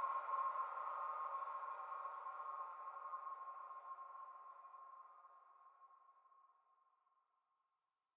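The last held tone of an ambient electronic track: a steady high ringing note over a soft hazy wash, fading out evenly to silence about seven seconds in.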